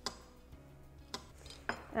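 Kitchen knife slicing a banana on a wooden cutting board: a few sharp taps of the blade against the board, the first the loudest.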